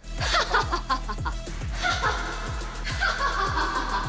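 A woman laughing over background music with a steady low drum beat of about three beats a second.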